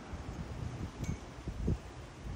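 Wind buffeting the microphone in uneven low gusts, with a brief faint ringing note about halfway through.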